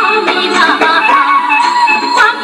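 North-east Indian folk song: a singing voice with a wavering, ornamented melody over instrumental accompaniment.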